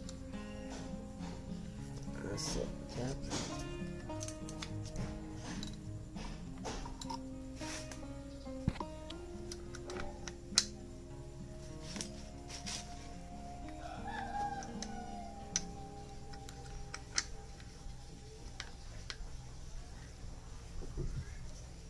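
Background music with a rooster crowing about two-thirds of the way through. Several sharp metallic clicks come from gearbox parts being handled and fitted into a motorcycle crankcase.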